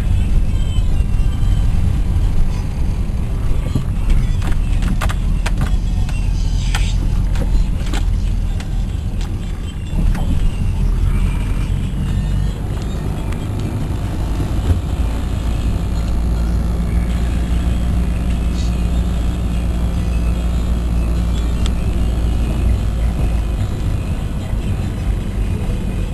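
Steady low rumble of a car's engine and tyres, heard from inside the cabin while driving. A cluster of sharp clicks comes between about four and eight seconds in.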